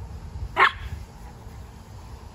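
A wire fox terrier gives a single short, sharp bark about half a second in while playing with another terrier.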